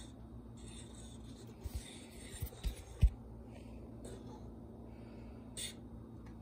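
Pot of red beans and rice simmering on an electric stove, with soft bubbling hiss over a steady low hum. A few low thumps come around the middle, the loudest about three seconds in.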